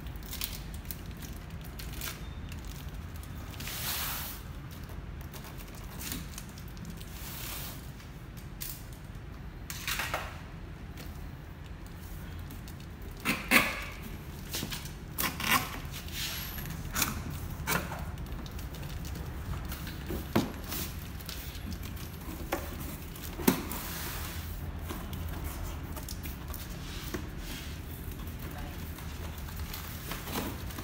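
A cardboard keyboard box being opened: a box cutter slitting packing tape, then the box handled, laid down and its flaps opened, with scattered rustles and a few sharp knocks and scrapes. A steady low room hum runs underneath.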